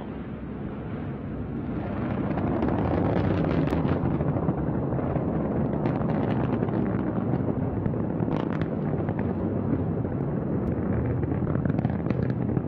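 Antares rocket's first stage, with its two RD-181 engines at full thrust during ascent, heard as a loud, deep rumble with occasional sharp crackles. It swells over the first two seconds, then holds steady.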